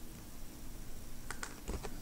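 A quick cluster of about five small clicks from a computer mouse and keyboard, bunched together about a second and a half in, over faint room noise.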